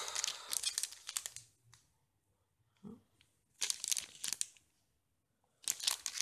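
Clear plastic packets crinkling as they are handled and shuffled, in three bursts: one at the start, one around four seconds in and one at the end.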